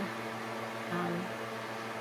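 Small electric fan running: a steady hum with a faint hiss, under a short spoken 'um' about a second in.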